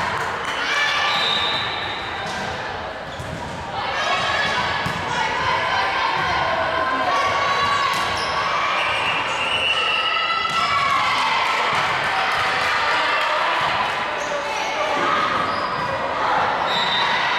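Volleyball rally in a gymnasium: the ball struck and bouncing a few times, under players and spectators calling and shouting in high voices, echoing in the hall.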